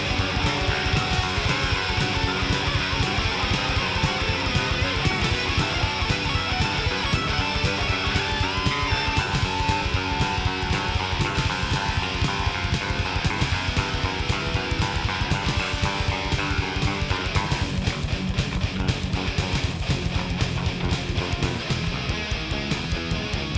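Thrash metal recording: distorted electric guitars and bass guitar over fast, driving drums, with the mix changing about three-quarters of the way through.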